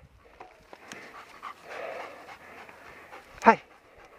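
A dog panting hard from running on the leash.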